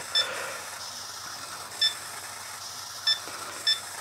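ToolkitRC ST8 servo tester beeping as its knob and buttons are pressed to step through menu settings: four short, high electronic beeps a second or so apart, over a steady background hum.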